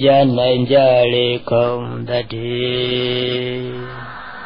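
A man's voice chanting a Buddhist recitation in drawn-out, evenly pitched phrases, ending on a long held note that fades out near the end.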